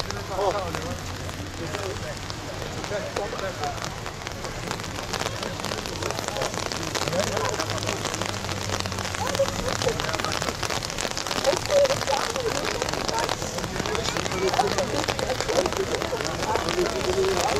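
Steady rain pattering, a dense haze of small drop ticks, with low murmured voices underneath.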